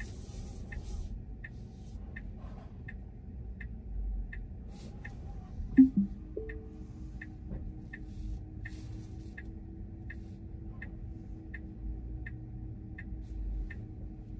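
Tesla's turn-signal indicator ticking steadily in a tick-tock rhythm, about three clicks a second. About six seconds in there is a short, louder low sound with a brief tone as the car shifts into reverse, then a faint steady whine while it backs up.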